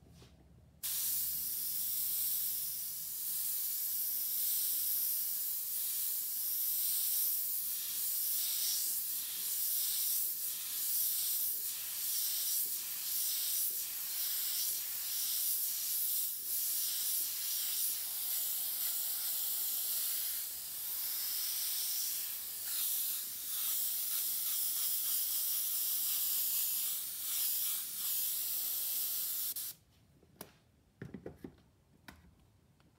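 Airbrush spraying paint: a hiss of compressed air through the nozzle. It starts about a second in, swells and dips as the trigger is worked, and cuts off suddenly just before the end.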